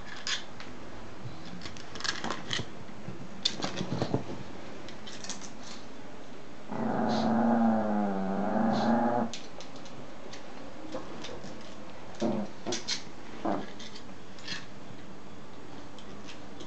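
A dog growls over a rawhide bone, one wavering growl lasting about two and a half seconds in the middle. Scattered short clicks and knocks come before and after it.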